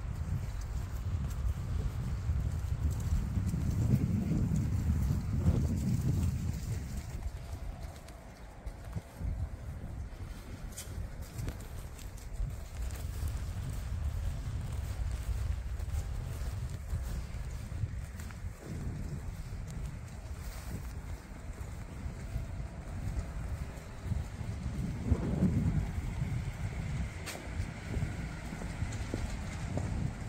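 Street ambience on a walk: footsteps on paving over a steady low rumble of wind on the microphone. A car passes twice, swelling and fading a few seconds in and again near the end.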